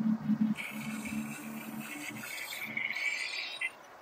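Experimental electronic music from modular and physical-modeling synthesis: a choppy low hum under a band of hissing digital noise. It cuts off suddenly near the end.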